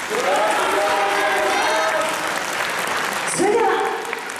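Audience applauding, with voices calling out over the clapping.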